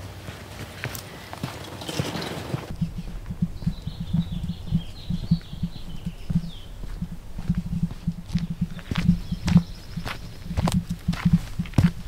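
Footsteps on a dirt trail at walking pace, dull thuds and small clicks several times a second close to the microphone.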